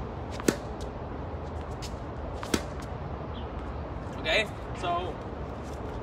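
Tennis ball impacts on a hard court: two sharp pops, about half a second in and a louder one about two and a half seconds in, from the ball being struck and bouncing. A steady low background hum runs underneath.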